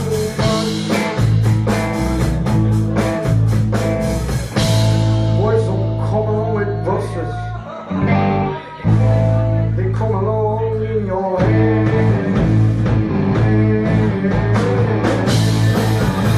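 Live rock band playing: electric guitar, bass guitar and a drum kit, with bending guitar notes through the middle and a brief break a little over halfway.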